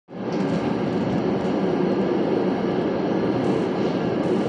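Steady rumble of an RTD N Line electric commuter train running along the track, heard from inside the passenger car.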